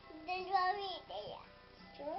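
A toddler singing a short wordless phrase in a high voice: held notes for under a second, then sliding pitches, with a brief rising sound near the end, over faint background music.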